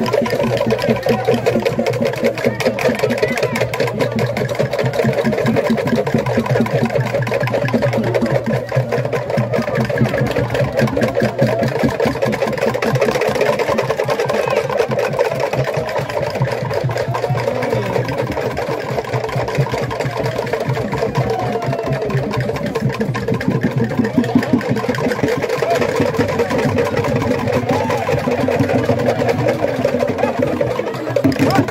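Fast, unbroken percussion accompanying a traditional Tolai dance, with a steady drone of many voices beneath it.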